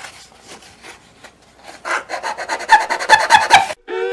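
A small knife blade scraping and shaving the wooden top of an old fiddle along the edge of an f-hole, in quick short strokes that grow louder about halfway through. Near the end the scraping stops and fiddle music comes in.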